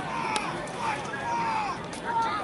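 Indistinct voices at a distance over outdoor crowd background, with one sharp tick about a third of a second in.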